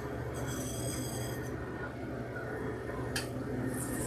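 Case-coding conveyor running with a steady low hum while a carton passes the printheads. A faint high-pitched whine comes in just after the start and stops about a second and a half in, and a single sharp click comes about three seconds in.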